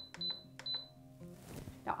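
Instant Pot electric pressure cooker's control panel beeping as its timer button is pressed repeatedly to set the cook time, short high beeps a few tenths of a second apart that stop just under a second in.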